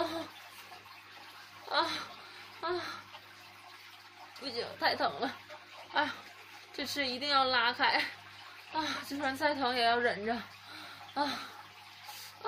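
A young woman's wordless moans and whimpering cries of pain from a sprained ankle: several short ones, with two longer, quavering cries in the middle, over a faint steady low hum.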